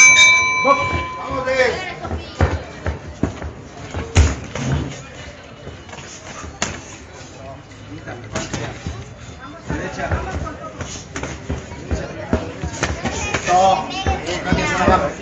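A boxing ring bell struck once at the very start, ringing for about a second to open the round. It is followed by scattered sharp thuds from the bout in the ring, under shouting voices from ringside.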